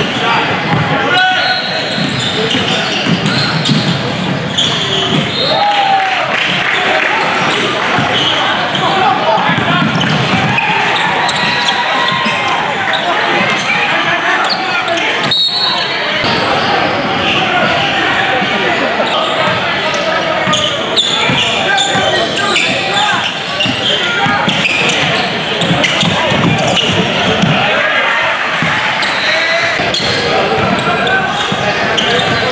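Live game sound in a large gym: many voices of spectators and players talking and shouting, echoing in the hall, with a basketball bouncing on the hardwood court.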